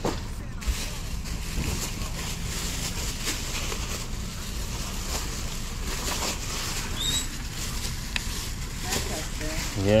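Steady low rumbling background noise with faint rustles, and a brief high chirp about seven seconds in.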